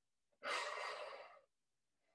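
A woman's forceful breath out during an ab crunch: one hissing exhale, about a second long, starting about half a second in.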